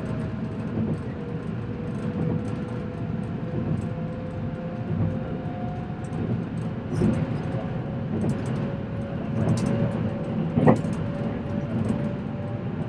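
Interior running noise of a moving electric passenger train: a steady low rumble of wheels on rail with a faint, slowly drifting whine, scattered small clicks and rattles, and one sharper knock near the end.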